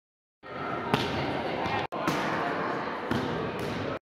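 Volleyballs being hit and bouncing on a hardwood gym floor: three sharp knocks over echoing gym noise. The sound cuts out dead twice for a moment.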